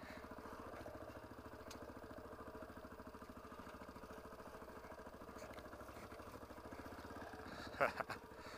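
Dual-sport motorcycle engine running steadily at low revs, with an even, rapid pulsing and no revving, as the bike rolls down a steep dirt trail.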